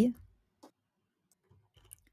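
The tail of a spoken word, then near silence broken by faint short clicks, one about half a second in and one near the end.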